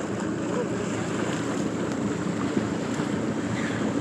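Steady rush of wind across a phone's microphone, mixed with water rushing along the hull of a motorboat cruising across a lake.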